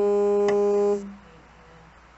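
A loud, steady electronic buzz with a clear low pitch that cuts off abruptly about a second in, with a sharp click about half a second in.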